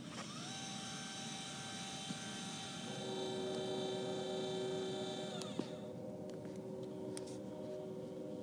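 Celestron CGX equatorial mount's motors whining as it slews to a go-to target. A high whine rises in pitch as the slew starts, holds steady, and falls away about five and a half seconds in, while a lower motor whine joins about three seconds in and runs on.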